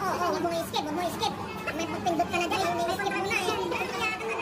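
Continuous chatter of voices with no clear words, some of them high-pitched like children's voices.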